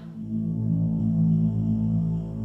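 A low, steady droning hum of deep sustained tones, a suspense drone in the background music.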